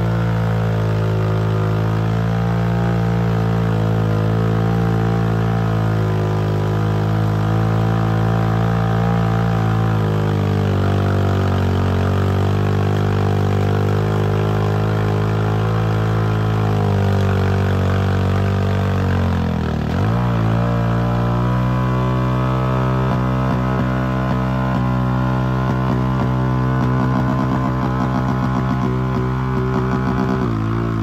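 Engine of a heavily modified Honda ATV on giant mud tires, running at steady high revs under heavy load as it crawls through deep mud. About two-thirds of the way through, the revs sag sharply, then climb back and hold steady again.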